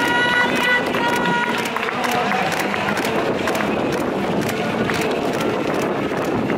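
Footsteps of a large pack of runners slapping on stone paving as they pass close by, a dense irregular patter, with voices over it in the first second or so.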